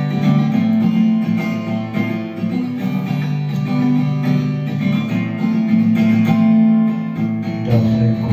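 Instrumental passage of a song: acoustic guitar strumming chords at a steady level, with sustained notes.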